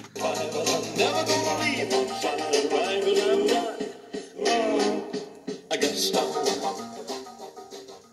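Music playing back from a cassette in a Pioneer CT-W770 double cassette deck, with brief dips in level about four and six seconds in.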